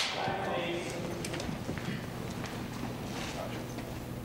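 Film-set room tone between a slate and the call of 'Action': a steady low hum with faint scattered clicks and shuffles, opening on the dying echo of the clapperboard's snap.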